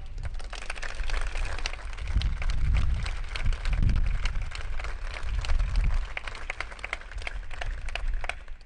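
Audience applauding: a dense, irregular patter of many hands clapping, with a low rumble underneath at times, thinning toward the end.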